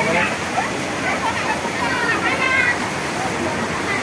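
Steady rush of hot-spring water pouring and splashing into the bath, with a crowd of people's voices chattering over it.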